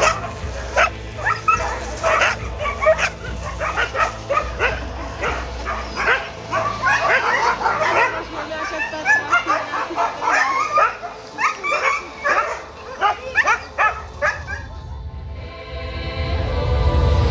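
Many huskies barking and yipping at once, short overlapping calls one after another, thinning out near the end.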